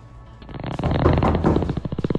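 A long, rasping fart sound effect that swells in loudness from about half a second in.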